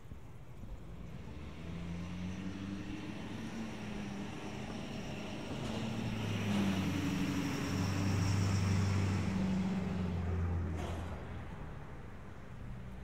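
Pickup truck towing a trailer driving past on the street, its engine and tyre noise growing louder over several seconds, loudest a little past the middle, then fading away.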